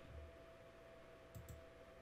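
Near silence: faint room tone with a low steady hum, and two faint quick clicks about one and a half seconds in.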